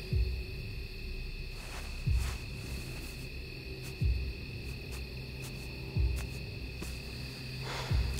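Suspense film score: a low booming pulse, falling in pitch, about every two seconds, under a steady high drone.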